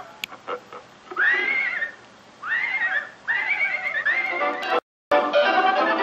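Cartoon soundtrack heard through a computer speaker: a horse whinnies four times, each call rising then falling, over closing music. Near the end the sound cuts out briefly, then a loud closing music chord comes in.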